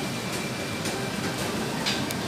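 Shopping trolley rolling across a supermarket floor, its wheels giving a steady rattling rumble with a few faint clicks, over the store's background hum.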